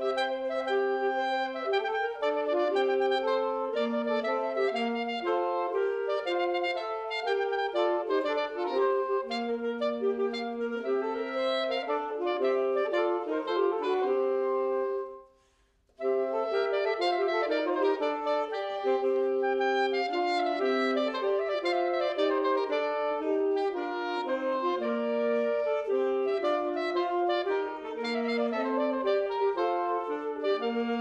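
Saxophone trio playing an Ars Subtilior piece arranged for saxophones, several lines moving against each other in short notes. About halfway through the sound drops away for roughly a second, then the playing comes back in suddenly.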